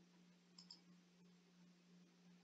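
Near silence with a faint steady low hum, and about half a second in a faint quick double tick: a computer mouse button clicked, pressed and released.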